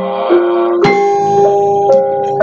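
Javanese gamelan ensemble playing: bronze metallophone and gong notes struck one after another about half a second apart, each ringing on under the next.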